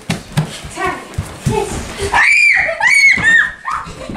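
Children shrieking: two high-pitched squeals in the second half, during a chasing game. Before them, low thumps of bare feet running on a wooden floor.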